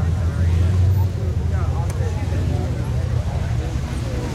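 Pickup truck's engine running under load as it pushes through deep mud, a low steady drone that drops back a little about a second in. Onlookers' voices chatter faintly over it.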